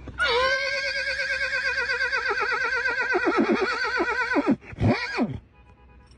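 Car tyres squealing: a long, high squeal with a fast wobble in pitch for about four seconds, then a shorter squeal that rises and falls.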